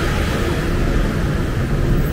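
Steady traffic noise from a busy multi-lane road: a continuous rumble of engines and tyres with no single vehicle standing out.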